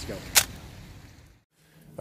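A man's last spoken word, then faint road noise inside a moving car that fades away into a moment of dead silence about a second and a half in.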